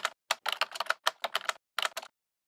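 Computer keyboard typing sound effect: a quick, irregular run of keystroke clicks, with one short pause near the end.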